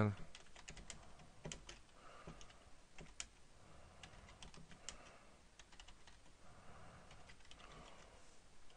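Computer keyboard being typed on: faint key clicks at an uneven pace as a line of text is entered.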